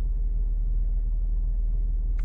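A 50 Hz sine test tone played through the car's audio system: a steady, very deep hum.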